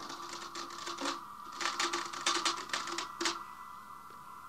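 Radio-drama sound effect of the robot ship's machinery relaying an order: irregular runs of rapid typewriter-like clicking over a steady electronic hum, with a low tone that comes and goes.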